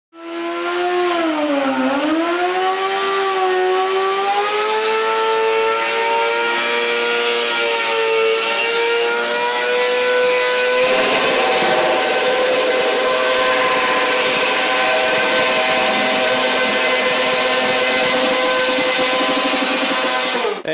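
Sport motorcycle engine revved hard during a burnout, the rear tyre spinning against the floor. The revs dip about two seconds in, then climb and hold high and steady, the sound turning harsher about halfway through.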